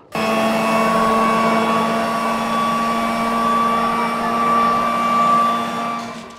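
Leaf blower switched on suddenly and running at a steady pitch: a constant whine over a rush of air.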